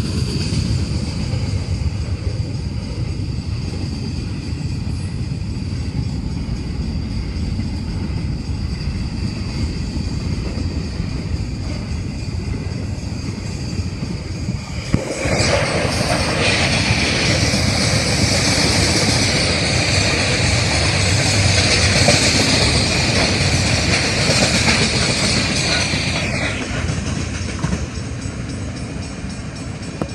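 Grain train hopper wagons rolling past close by, a continuous rumble and clatter of wheels on rail. From about halfway it is louder, with a steady high-pitched ringing over the rumble until near the end, when the train draws away.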